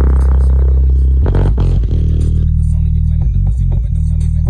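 JBL Boombox 2 portable Bluetooth speaker playing a bass-only hip-hop track at full volume: loud, deep held bass notes that change pitch about a second in and again about halfway through.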